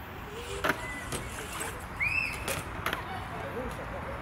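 BMX bike rolling on a concrete skatepark surface: a steady rumble from the tyres, with a few sharp clicks and knocks and a short squeak about two seconds in.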